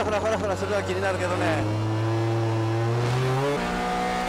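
Onboard sound of a racing RX-7 FD3S's naturally aspirated three-rotor 20B rotary engine under power, a steady drone that climbs in pitch toward the end. About three and a half seconds in it gives way abruptly to a different car's engine note, the onboard sound of a CR-X.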